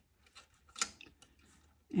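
A few light clicks and taps from knotting cord, a metal shank button and a binder clip being handled against a board, with one louder click a little under a second in; otherwise near silence.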